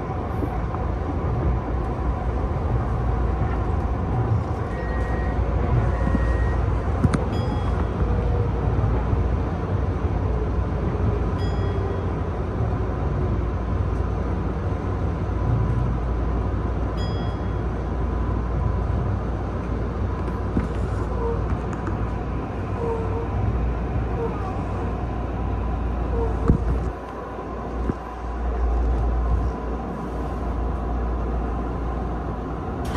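Tokyu new 5000 series commuter train running on rails, heard from inside its front end: a steady low rumble of wheels and running gear with a motor tone that slowly falls in pitch over the first half. Short high beeps sound three times, and the rumble briefly eases near the end.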